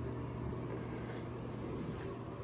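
A steady low hum with faint room noise, with no sudden events.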